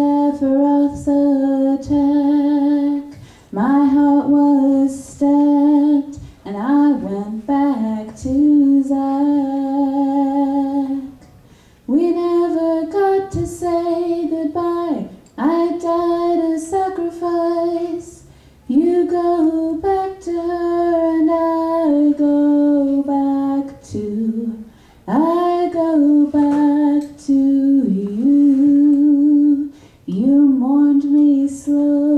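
A woman singing solo into a microphone, a slow song of long held notes, some with vibrato, in phrases broken by short breaths.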